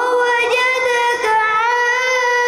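A boy reciting the Quran in melodic tilawat style, rising into one long drawn-out note and holding it with small steps up and down in pitch.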